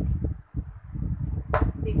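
Muffled low thuds of a basketball being dribbled outside, mixed with a dull rumble, with one sharper knock about halfway in.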